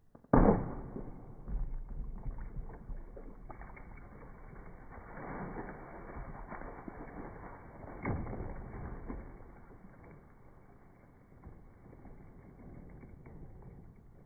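Sword blade striking and slicing through a plastic jug: one sharp, loud hit about half a second in, followed by a long stretch of lower, uneven noise with another louder moment about eight seconds in.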